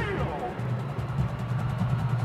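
Marching band drumline playing a rapid, even run of drum strokes over a steady low band sound.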